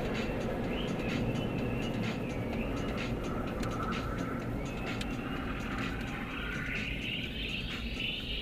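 Steady engine and road rumble inside a moving car's cabin, with music playing over it. The music's higher melody line grows stronger near the end.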